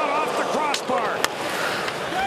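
Ice hockey arena sound under a commentator's voice: steady crowd noise with two sharp clacks of stick and puck, about a second apart.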